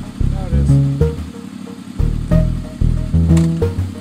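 Background pop music with a deep, stepping bass line and a steady beat.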